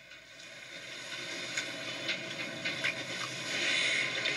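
Studio audience cheering and applauding, the crowd noise swelling in loudness over the first few seconds and peaking near the end.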